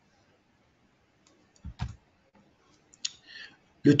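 Computer mouse clicks advancing a slide's animations: two quick clicks close together a little before two seconds in, and one more about three seconds in.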